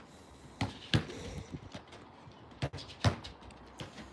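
Football kicked against a wall and rebounding, giving short sharp thuds: two pairs of hits, each pair less than half a second apart and the pairs about two seconds apart, then a single touch near the end.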